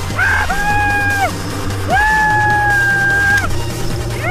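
Background music with a steady beat, over which a person gives two long, high whoops, each rising at the start and falling away at the end, while riding a zip line.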